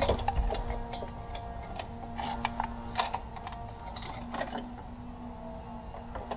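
Metal hand tools and engine parts clicking and clinking irregularly as they are handled in a car's engine bay, loudest in the first moments, over a faint steady hum.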